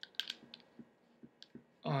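Light metallic clicks and taps from a copper mechanical vape mod tube being handled, about half a dozen spread over the first second and a half.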